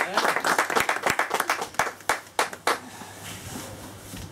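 A small group applauding by hand, the clapping thinning to a few single claps and dying out at about three seconds.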